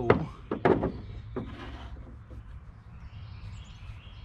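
A few short, sharp knocks of wood on wood in the first second and a half as a small wooden block is set and pressed against a table frame to mark a hole. After that, only a steady low outdoor background hum.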